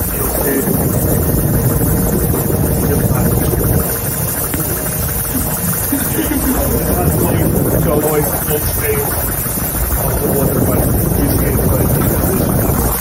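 Workshop machinery running with a steady, loud hum, with faint voices beneath it.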